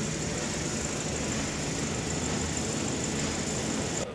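Steady low mechanical hum and hiss of an underground car park, picked up by a phone's microphone.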